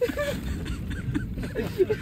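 Men laughing and voicing short sounds inside a van cabin, over a low steady rumble.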